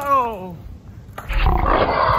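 A man's cry sliding down in pitch as he crashes off a skateboard onto the asphalt, then a loud, rough groan starting about a second and a half in.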